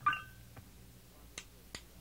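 A drummer's count-in before a song: sharp single clicks, about a third of a second apart, in a quiet room, starting about halfway through.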